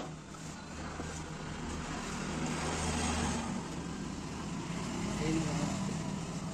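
A motor vehicle passing, its engine hum and road noise swelling to a peak about halfway through, then easing and swelling again near the end.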